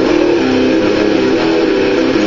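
Electric guitar playing a riff, its notes changing several times a second.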